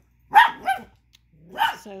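Chihuahua puppy barking: three sharp, high-pitched yaps, two in quick succession and then one more about a second later.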